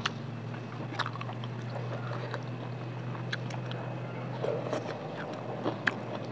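Close-miked eating: chewing with scattered short, sharp mouth clicks and smacks, over a steady low hum that fades out near the end.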